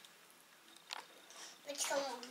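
A toddler eating soft cottage cheese with a spoon: quiet chewing, with one light click of the spoon against the bowl about a second in.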